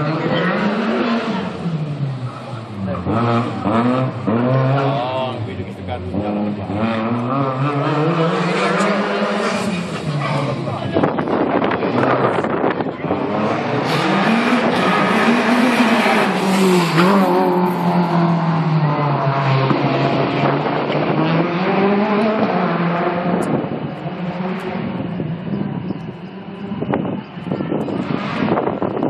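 Competition car's engine revving up and down over and over, rising in pitch under acceleration and dropping off under braking, as it is driven hard through a tight timed course.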